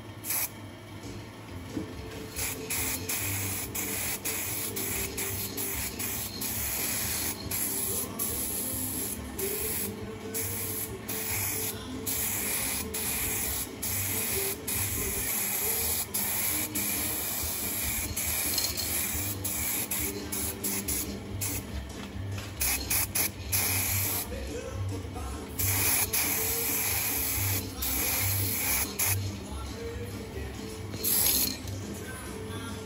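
Aerosol spray can hissing in a long series of bursts with short breaks between them. It is laying a dark guide coat over grey 2K filler primer on a car body panel before the panel is sanded.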